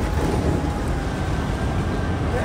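Steady low rumble of outdoor traffic noise, with a faint high steady tone running through it.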